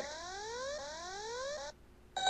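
Synthesized electronic sound effect for an animated computer display: several overlapping tones keep sweeping upward in pitch over and over, then cut off suddenly near the end.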